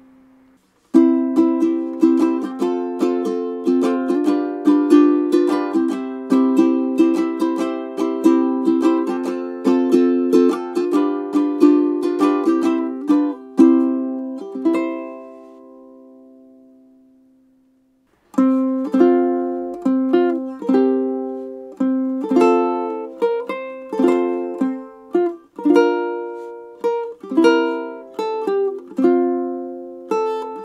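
Enya Nova U Pro tenor ukulele, a resin-bodied ukulele, played solo as a tone demo: a passage of plucked notes and chords that ends with the last notes ringing out and dying away about halfway, then after a short pause a second passage begins.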